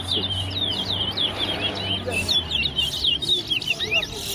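Caged towa-towa birds singing in a whistling match: a fast, unbroken run of high, sweeping chirps and twitters.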